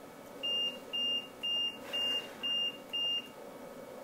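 Electronic alarm on a bed beeping: six short, high, steady-pitched beeps, about two a second, then stopping.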